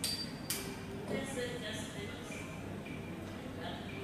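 Two sharp clicks about half a second apart as a lighter is sparked to light a cedar spill, over faint background talk.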